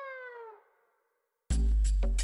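A comedic falling-pitch sound effect, like music slowing down to a stop, gliding downward and fading out in the first half-second. A beat of silence follows, then a deep bass hit comes in with a voice about one and a half seconds in.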